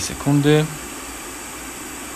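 A man's voice briefly, then a steady low hiss with no other events.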